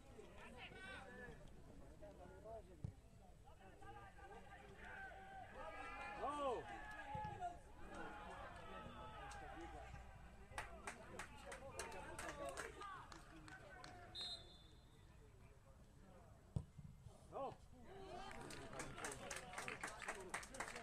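Faint, open-air shouting and calling of footballers across the pitch during play, with a few single sharp knocks, the loudest about two-thirds of the way in. Runs of quick clicks come about halfway through and again near the end.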